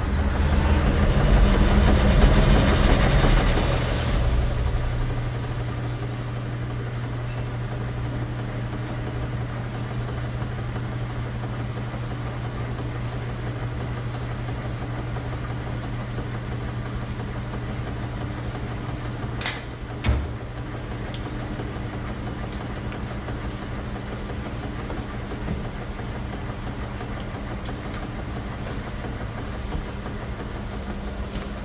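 A loud rushing whoosh with a faint rising whistle, fading after about four seconds into the steady low hum of a row of laundromat washing machines running. Two sharp clicks come about twenty seconds in.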